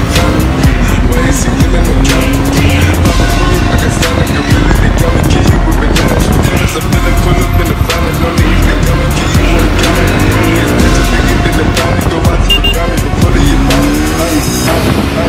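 Bajaj Pulsar NS200 motorcycle engine running under way, its note rising and falling as it revs, mixed with music.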